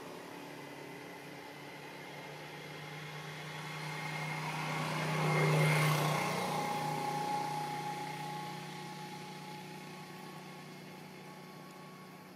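A passing engine: a steady drone that swells to its loudest about five and a half seconds in, then fades away.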